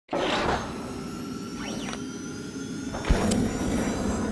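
Animated logo sting made of sound effects: a whoosh swells up at the start over held synthetic tones with a couple of faint pitch sweeps. About three seconds in comes a deep hit with a brief high ring.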